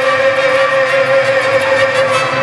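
Live mariachi music: a male ranchera singer holds one long, steady note over the band's strings and trumpets.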